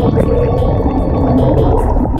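A loud, low rumbling whoosh sound effect for the channel's logo card, laid over outro music with a steady beat of about four to five ticks a second.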